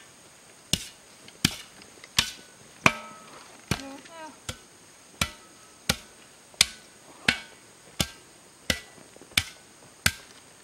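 A shovel blade striking the loose soil of a rebuilt grave mound in a steady rhythm, about thirteen sharp strikes at roughly one and a half a second. This is tamping the freshly piled earth, which had never been patted down, to firm it.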